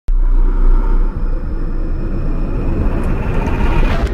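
Cinematic logo-intro sound effect: a deep, loud rumble that starts abruptly and swells with a rising whoosh toward the end, building up to the logo hit.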